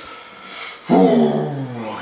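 A man's long, drawn-out wordless vocal sound, a hum or groan, starting about a second in and sliding down in pitch for about a second.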